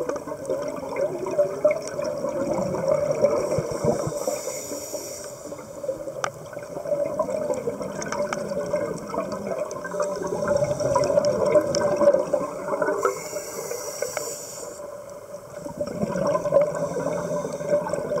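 Scuba regulator exhalation bubbles gurgling and burbling underwater, with two brief hisses about four and thirteen seconds in.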